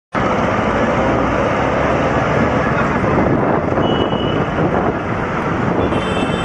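Steady, loud rushing noise of road traffic.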